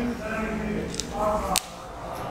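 A whiteboard marker's cap snapped onto the pen: a single sharp click about one and a half seconds in, after a few low murmured words.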